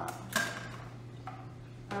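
A short knock from objects being handled, about half a second in, over a steady low hum.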